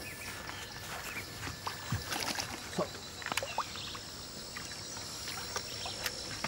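Faint splashing and sloshing of water as a large hooked fish thrashes its tail at the surface, in scattered short splashes, a few sharper ones in the middle.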